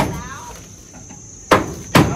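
Repeated sharp knocks like steady hammering, about two to three a second: one at the start, a pause of about a second and a half, then two more near the end. A person laughs briefly just after the first knock, and a faint steady high whine runs underneath.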